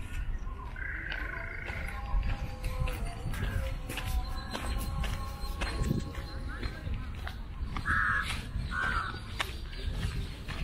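Crows cawing: a harsh call about a second in and two short caws near the end, over faint background voices and a low rumble.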